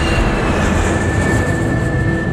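Trailer sound design: a loud rushing, rumbling swell that passes like a train going by. Sustained drone tones from the score run beneath it, and one high tone slides down in pitch as the rush peaks.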